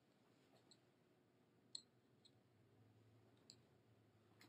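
Near silence with a few faint clicks, the clearest a little under two seconds in: a wire being disconnected at the float level sensor's transmitter head, opening the 4-20 mA current loop.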